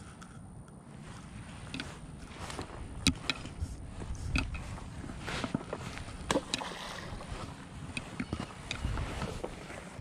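Wind rumbling on the microphone, with scattered sharp clicks and rustles from handling a baitcasting rod and reel through a cast.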